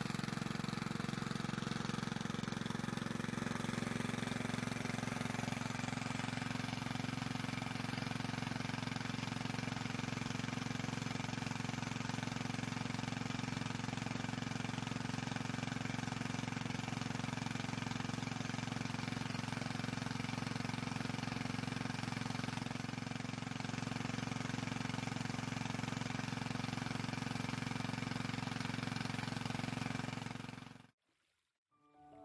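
Small petrol-engine water pump running steadily at one speed, pumping water out through a plastic discharge pipe.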